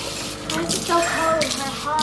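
Kitchen faucet running into a sink, a steady stream of water, with a voice over it from about half a second in.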